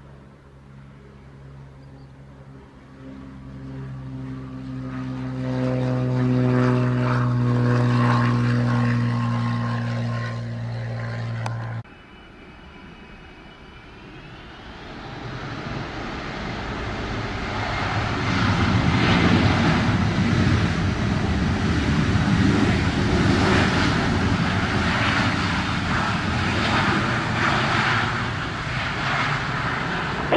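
A single-engine propeller plane drones past on the runway, its propeller tone growing louder until the sound cuts off suddenly about twelve seconds in. Then a Delta Boeing 757 on its landing rollout: a brief rising whine, then a loud jet roar that swells and holds as its engines run in reverse thrust.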